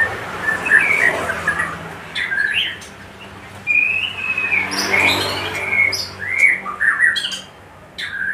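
Birds chirping and calling in a string of short, varied chirps and slurred notes, over a faint low steady hum.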